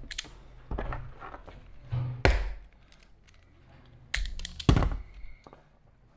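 Hand-held self-adjusting wire stripper snapping shut and springing open several times as it strips the insulation off the ends of thin wires, each stroke a sharp clack, with small knocks of handling on a workbench.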